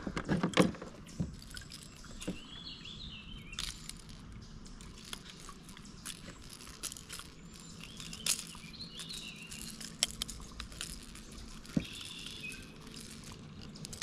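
Birds singing in short chirping phrases, repeated a few times, with scattered sharp clicks and knocks from handling a fish and tackle in a plastic kayak, loudest in a cluster at the start.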